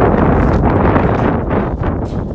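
Wind buffeting the microphone: a loud, steady rushing noise with no clear tone.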